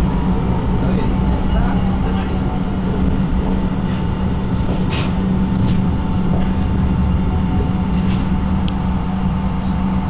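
Tram running, heard from inside the passenger car: a steady low rumble with a constant hum, and a few short clicks about halfway through.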